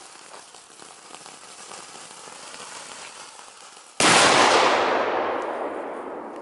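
Funke "Big Assorted Flowers" firework burning with a fizzing crackle, then a sudden loud burst about four seconds in whose noise dies away slowly over the next two seconds.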